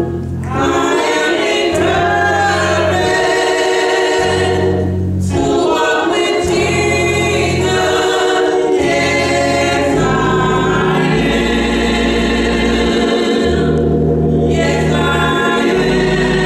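Gospel choir singing a song in harmony, over low sustained bass notes that change every second or two.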